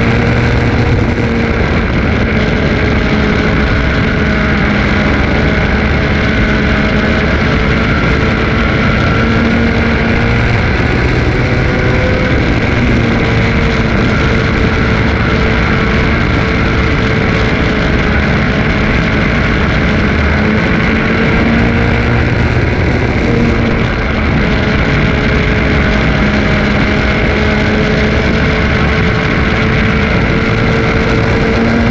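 Race car engine running hard, heard from inside the cockpit, loud and continuous. Its pitch sags and climbs again every several seconds as the car laps the track, under steady wind and road noise.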